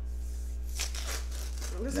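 A paper ice cream pint being opened: brief, faint rustling and tearing of the lid about a second in, over a steady low hum.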